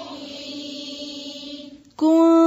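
Quranic recitation chanted softly on a long held vowel in tajweed style, fading out near the end.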